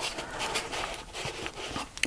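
A plastic scraper dragging thick acrylic paint across journal paper: a soft, uneven scraping and smearing noise that rises and falls with the strokes.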